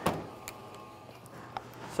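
Bowling ball, a GB2, released onto the lane with a sharp knock, then rolling down the lane with a steady whir and a couple of small clicks.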